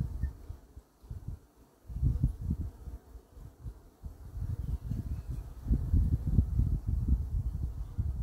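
Honeybees buzzing close to the microphone at a beehive, coming and going in uneven low bursts, with a near-quiet lull about a second in.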